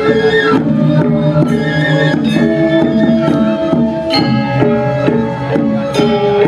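Balinese gamelan music: struck metallophone notes ringing on in a steady, busy melody with drum strokes.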